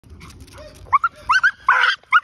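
American Pit Bull Terrier on a leash, lunging and vocalising at something he has spotted: about four short, rising, high-pitched yelps in quick succession, then a louder, harsher bark near the end.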